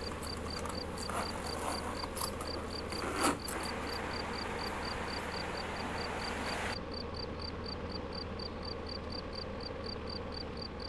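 A cricket chirping steadily in a regular rhythm, about three to four short chirps a second, as night ambience. A background hiss under it drops away about seven seconds in, and there is a brief noise about three seconds in.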